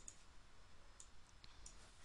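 Near silence with a few faint computer mouse clicks, about a second in and shortly after.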